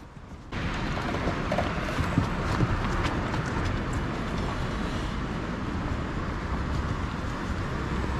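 City street ambience recorded while walking on pavement: a steady hum of traffic with light footsteps, coming in suddenly about half a second in.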